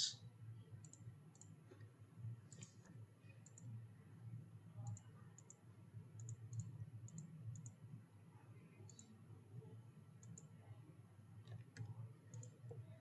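Faint computer mouse-button clicks, about a dozen scattered through, many in quick pairs, over a steady low hum.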